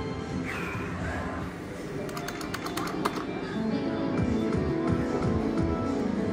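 Slot machine's electronic game music playing, with a short run of quick ticks about two seconds in.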